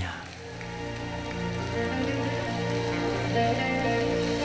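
A live band playing the closing bars of a song, held chords swelling gradually louder, with a haze of clapping over them.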